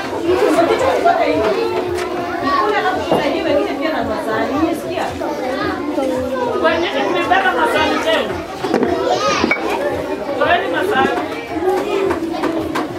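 A room full of young children chattering and talking over one another, with one higher voice standing out about nine seconds in.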